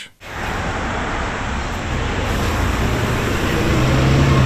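Street traffic: a car driving past close by, then a city bus's engine running as it passes near, with the low engine hum growing louder toward the end.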